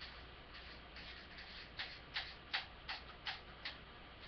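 A series of light, sharp clicks or taps. They are faint and uneven at first, then about halfway through come six louder ones in a regular run, about three a second.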